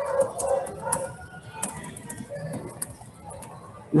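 Computer keyboard keys clicking irregularly as a short line of text is typed, with a soft, steady tonal sound in the first second.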